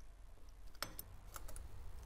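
A few faint, sharp metallic clicks from a V-band clamp being fitted by hand around a turbocharger's turbine-housing outlet flange, the clearest a little under a second in.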